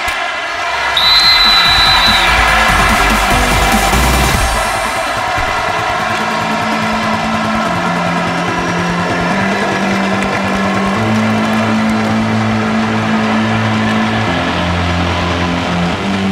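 Arena crowd cheering loudly as a wrestling bout ends, with a brief high-pitched tone about a second in. Background music with long, sustained low notes comes in partway through and carries on as the cheering thins.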